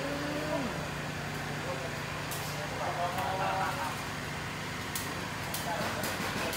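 Indistinct voices speaking briefly over a steady low hum, with a few faint clicks.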